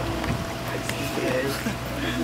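Faint background voices over a steady low hum, with a few light clicks.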